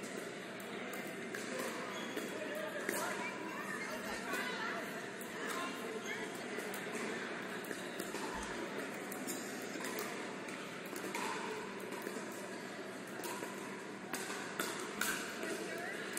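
Pickleball paddles striking the hard plastic ball during a rally, irregular sharp pops every second or few, in a large echoing indoor hall with a murmur of voices in the background.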